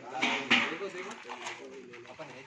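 Indistinct voices of several people talking around a cooking fire, with a brief noisy burst about half a second in.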